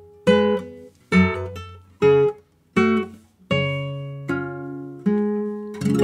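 Nylon-string classical guitar playing a passage very slowly, one note or chord at a time: about eight plucked attacks a little under a second apart, each left to ring and fade, the later ones held longer.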